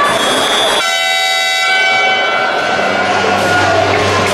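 A high shrill tone, then about a second in a loud horn blast that holds steady for nearly two seconds before fading, over the noise of a crowd in a sports hall.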